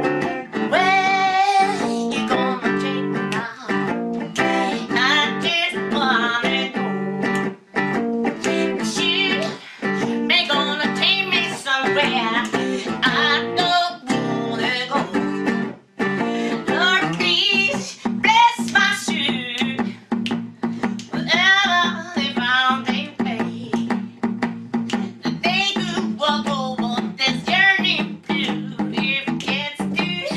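Live song: a hollow-body electric guitar played through a small amplifier, with a woman singing over it in wavering, held phrases.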